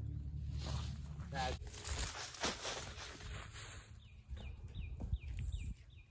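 Outdoor woodland sound: dry fallen leaves rustling, then a few short falling bird chirps about four to five seconds in. A man's brief 'oh, oh' comes near the start.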